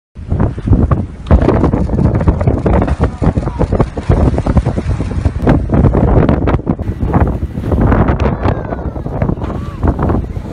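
Strong wind buffeting the microphone on a boat at sea: a heavy, gusty rumble that does not let up.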